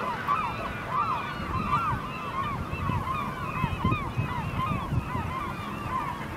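A large flock of gulls feeding over a herring run, calling all at once: many short, overlapping calls with no break, over a low steady rumble.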